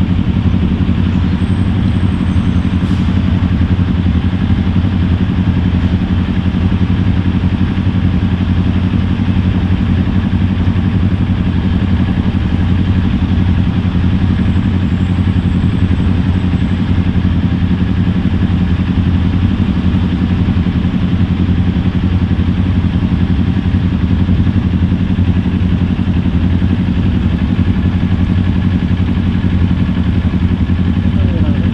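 Kawasaki Ninja 400's parallel-twin engine running at a steady, unchanging pitch with no revving.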